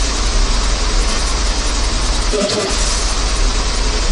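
Heavily distorted electronic dance music from a DJ mix: a dense, noisy wall of sound over heavy sub-bass, with a downward pitch sweep about halfway through.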